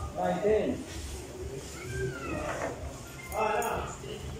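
Indistinct voices in a pool hall: a few short spoken phrases from people around the table, near the start and again near the end.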